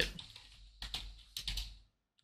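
Typing on a computer keyboard: a few keystrokes in two short groups, about a second in and again a little later.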